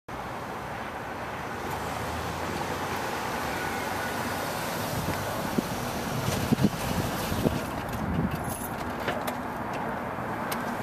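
A convertible sports car driving slowly up and pulling to a stop, its engine running, with a few low rumbles and clicks in the second half.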